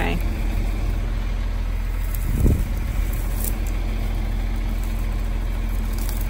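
Tractor engine idling steadily with a low hum, with one short low thud about halfway through.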